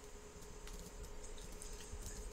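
Faint room tone with a thin, steady low hum and no speech.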